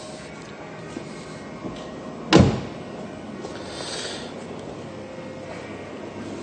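A Volvo V50's front passenger door shut once, a single solid thump about two and a half seconds in, over faint steady background noise.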